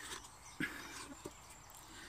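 Faint handling of a collapsible rubber camping cup, Swedish Army issue, being turned over and pulled open in the hands: soft rubbing with two light knocks, one about half a second in and another just after a second.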